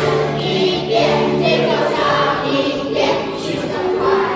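A large group of children singing a song together in unison, over a steady instrumental backing.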